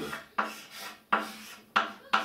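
Chalk being drawn on a blackboard: three short scraping strokes, each starting sharply and fading away.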